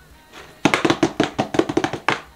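A rapid run of sharp percussive taps, about eight to ten a second, starting about half a second in.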